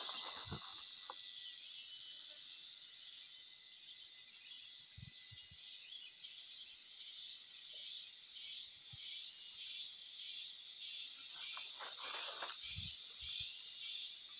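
Insects singing: a steady high whine, joined about six seconds in by a pulsing call at about two pulses a second.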